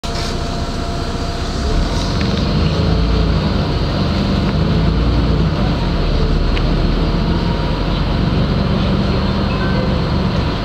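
Interior of a LiAZ-5292.65 city bus on the move: steady engine drone and road noise heard in the passenger cabin, the low engine sound growing heavier about two seconds in as the bus gathers speed.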